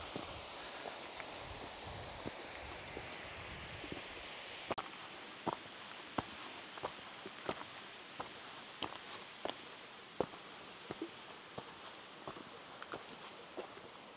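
A hiker's footsteps on a rocky mountain path: irregular sharp taps, about one and a half a second, becoming distinct about five seconds in, over a faint steady hiss that fades over the first few seconds.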